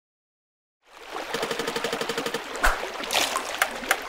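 Water sound effects: a stream running, starting about a second in, with a rapid run of clicks at first and then a few sharp splash-like hits.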